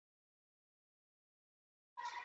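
Silence: the sound track is blank, with a sound cutting in right at the end.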